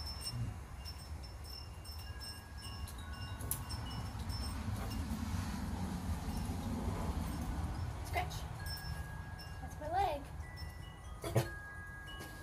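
Wind chimes ringing: scattered clear single notes, each hanging for a second or more, over a steady low rumble. A short rising-and-falling voice-like sound comes about ten seconds in, and a sharp click follows just after it.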